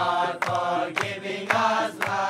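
A group of young men singing together in unison, with a sharp beat about twice a second.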